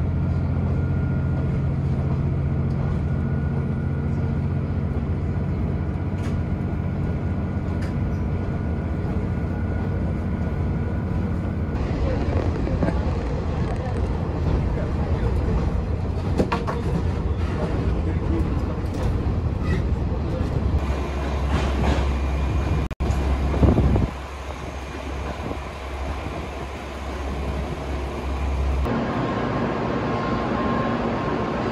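Train running, heard from inside: a steady low rumble and drone of the running gear and engine. The sound changes abruptly twice, with a brief dropout about two-thirds of the way through.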